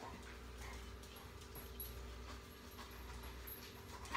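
A chocolate Labrador searching along a tile kitchen floor, heard as faint, scattered small clicks and rustles over a steady low appliance hum.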